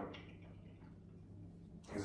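Quiet room tone with a faint, steady low hum; a short voiced sound fades out at the very start.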